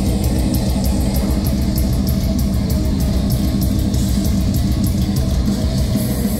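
Metalcore band playing live: heavily distorted electric guitars over a drum kit, with fast, steady drum and cymbal hits, loud and dense throughout.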